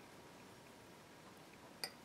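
Near silence, with one short sharp click near the end.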